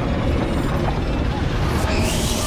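A dense, low rumble of trailer sound design, with a rising whoosh building near the end.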